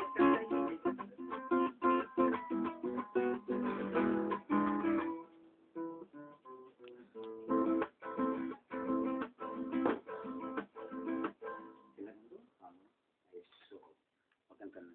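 Acoustic guitar played solo, strummed chords mixed with picked notes in a brisk rhythm. It drops to a few softer notes about five seconds in, picks up again at about seven and a half seconds, and trails off into sparse notes after about twelve seconds.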